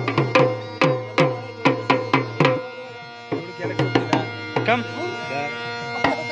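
Dhol, a double-headed barrel drum beaten with sticks, playing a steady rhythm of about two to three strokes a second, each with a deep boom that sags in pitch. The drumming drops off briefly about halfway, then picks up again, and a voice calls out near the end.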